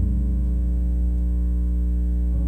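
A soft keyboard chord held steadily over a loud, constant mains hum.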